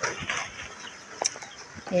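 Plastic bubble-wrap packaging rustling and crinkling as scissors cut into it, with a sharp snip-like click a little past halfway.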